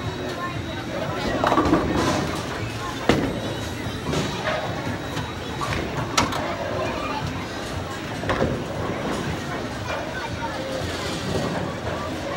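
Bowling alley din: other bowlers' voices and background music over a steady wash of noise, with a few sharp knocks, the clearest about three and six seconds in.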